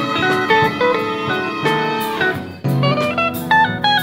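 Live electric guitar solo: single sustained notes stepping through a bluesy melody, with a short break about two-thirds of the way in.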